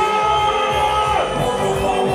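Loud live stage music played through a PA: a long held note that drops in pitch about a second in, over a steady drum beat.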